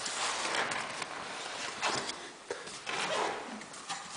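Faint hiss and handling noise with a few light knocks.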